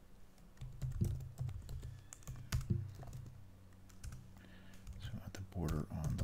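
Typing on a computer keyboard: irregular keystrokes, a few of them sharper and louder, as code is entered.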